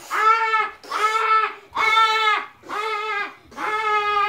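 A child's voice repeating a long, drawn-out 'aah' on the same high pitch, five times, about once a second, in a bleating, sing-song way.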